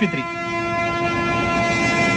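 Indian Railways WDM-series diesel locomotive hauling a passenger train: a steady, even rush of train noise with a held horn-like tone in it.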